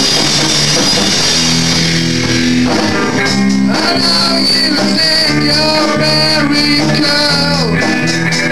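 Live punk rock band playing loud: electric guitars, bass and drum kit, with cymbal wash in the first few seconds, then held guitar notes and a melodic line over the band.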